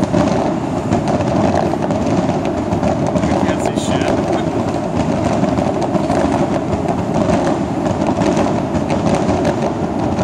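A fireworks display going off continuously: a dense crackle and din at a steady loudness, with indistinct crowd voices mixed in.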